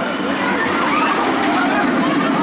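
Wing coaster train rushing along the track overhead, mixed with a continuous jumble of voices from riders and people nearby.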